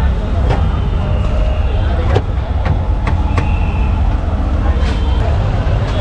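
Busy street ambience: a steady low rumble of traffic under background voices, with a few sharp clicks and knocks.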